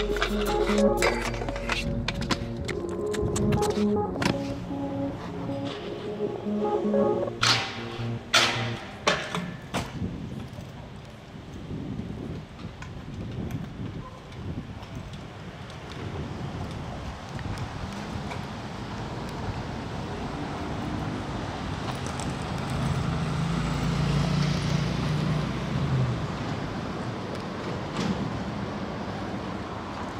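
A music track plays for about the first ten seconds, with a few sharp clacks near its end. The music then drops out for raw street sound: a stunt scooter's wheels rolling on a concrete sidewalk, with a low hum about three-quarters of the way through.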